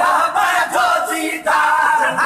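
A crowd of men loudly chanting a Sindhi naat together, in short repeated phrases.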